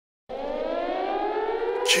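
An air-raid-style siren tone starts about a quarter second in and is held, rising slowly in pitch. A quick falling sweep comes near the end.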